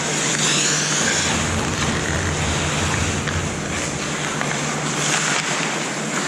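Ice hockey skates scraping and gliding on the rink ice, with a few faint stick or puck clicks, over a steady low hum.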